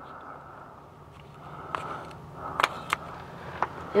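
Half-inch click-type torque wrench set to 75 foot-pounds on a lower shock bolt: several sharp metallic clicks in the second half, the wrench signalling that the set torque has been reached. A faint steady hum runs underneath.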